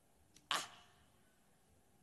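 A man's short, breathy exclaimed "ah" about half a second in, otherwise quiet room tone.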